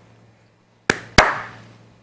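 Two sharp hand slaps about a third of a second apart, each fading out quickly.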